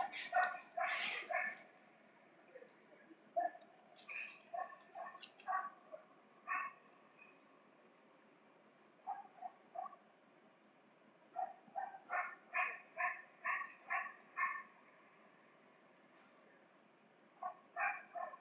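A dog barking in groups of several quick barks, about three a second, with pauses of a few seconds between the groups.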